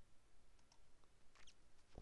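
Near silence: room tone with a couple of faint clicks of a computer mouse, about two thirds of a second and a second and a half in.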